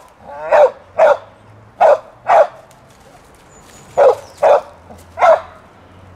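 A dog barking at sheep: seven sharp, loud barks, mostly in quick pairs, with a pause of about a second and a half near the middle.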